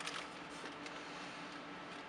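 Quiet room tone: faint steady hiss with a low, even hum and no distinct event.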